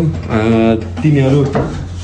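A man's voice speaking in two short phrases, then pausing, over a steady low hum.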